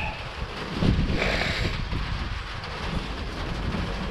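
Wind buffeting the microphone: an uneven low rumble, with a stronger gust about a second in.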